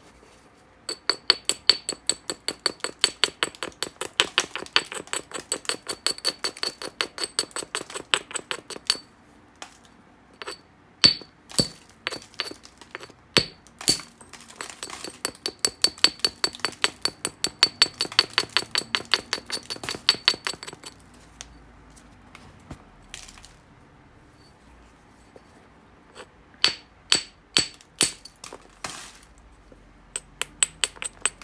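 A hammerstone worked quickly against the edge of a black obsidian blade: two long runs of fast, light glassy clicks, about five a second, with a few single harder knocks between them and a short burst near the end. The quick light strokes are typical of preparing the edge before a flake is struck off.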